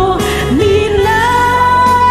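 Background music: a slow song, a singing voice holding long notes over a steady accompaniment.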